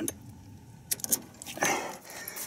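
Light metal clicks and clinks of a steel snap hook on a brake cable being clipped onto a tow bar: a few sharp clicks about a second in, then a short rattle.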